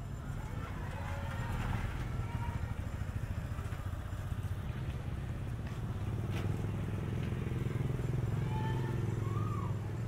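A motor vehicle engine running nearby: a low, steady rumble that grows louder in the second half, with faint voices in the background.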